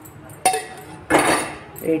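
A steel bowl knocks against a stainless steel mixer jar with one sharp ringing clink. About a second in, cooked carrot pieces slide and drop into the jar with a short clatter.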